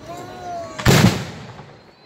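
Aerial firework shell bursting: one loud sudden bang about a second in, fading out over about half a second.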